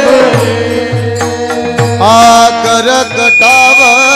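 Warkari kirtan music: small brass hand cymbals (tal) and low drum strokes in the first half, then from about halfway a male voice holds a long, wavering sung note over the accompaniment.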